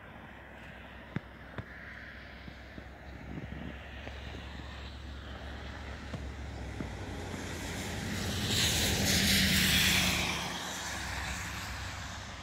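A vehicle passing on the wet, slushy street: tyre hiss and engine noise swell to a peak about nine seconds in, then fade away. Before it, a faint steady outdoor background with a few light clicks.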